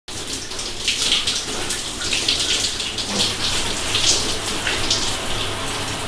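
A shower running: a steady hiss of spraying water with irregular splashes as it hits a person's head and hands.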